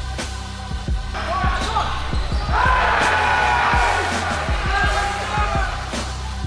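Basketballs bouncing on a hardwood gym floor during a pickup game, in repeated short thuds. Voices rise over the court noise from about a second in until near the end, all over background music with a steady bass.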